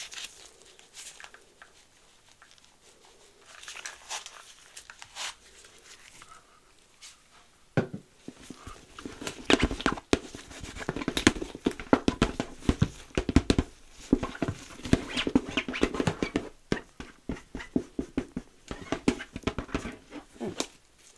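Gloved hands rubbing, scratching and tapping over the sides of a leather handbag close to the microphone. The handling starts with light, scattered sounds and turns into a dense run of scratchy rubbing strokes from about eight seconds in.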